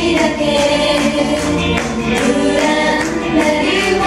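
A group of women singing together into microphones over a musical accompaniment, amplified through a PA system.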